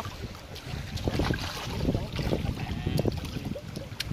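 Wind buffeting the microphone with water sloshing and splashing in a swimming pool, and faint voices in the background.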